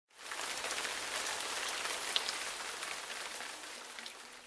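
Steady rain, an even hiss with fine crackle, easing off slightly toward the end.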